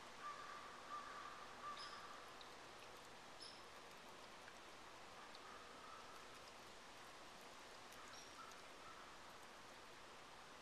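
Near silence: faint outdoor ambience with a few short, faint bird chirps in the woods.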